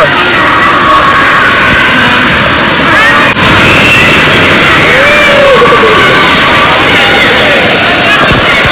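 Loud, steady rush of water and air noise on a phone microphone during an inflatable tube ride, with voices calling out faintly over it. A little over three seconds in, the noise briefly dips and then turns harsher and hissier.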